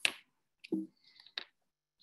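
Two short sharp clicks, about a second and a half apart, with a brief low voiced sound from a woman between them.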